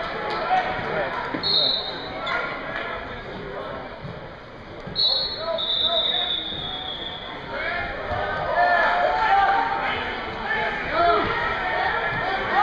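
Spectators' voices in a school gym, scattered calls that thicken into shouting in the second half. There are two high squeaks, a short one near the start and a longer one lasting about two seconds in the middle.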